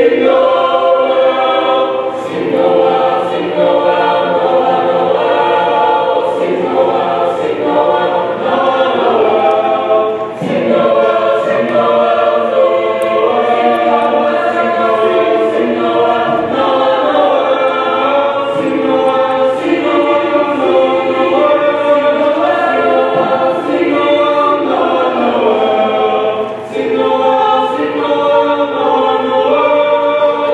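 Mixed high school choir singing in harmony, with short breaks between phrases about ten seconds in and again near the end.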